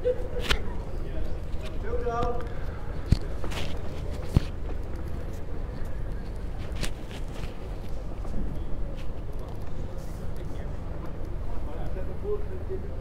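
Indoor bowls hall ambience: a steady low hum with faint distant voices and a few sharp clicks.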